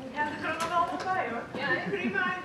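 Voices talking, the words not made out.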